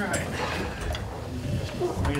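Chairs creaking and shuffling as several people sit down, with scattered clicks and knocks.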